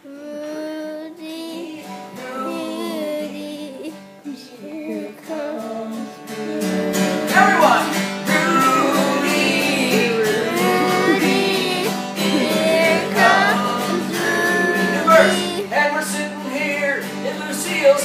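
Live acoustic guitar accompaniment with a wordless melody line over it, growing louder and fuller about six and a half seconds in.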